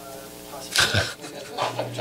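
A man laughing in short breathy bursts, starting just under a second in.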